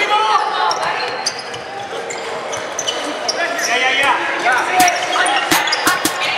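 Live sound of an indoor volleyball rally on a hardwood gym court: players calling out and moving on the floor, with sharp smacks of the ball being hit, several in quick succession near the end.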